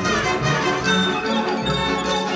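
Symphonic wind ensemble playing sustained, layered chords.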